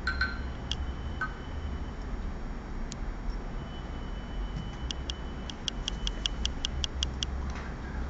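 A couple of light clinks of ceramic paint dishes, then about two seconds of quick, evenly spaced ticks, about six a second, over a low steady hum.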